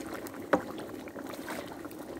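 Thick mole paste frying in lard in a glazed clay cazuela, sizzling and crackling as a wooden paddle stirs it. There is one sharp knock about half a second in.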